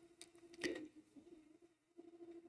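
Faint car engine revving real hard outside, heard as a low, nearly steady drone, with a short click about two-thirds of a second in.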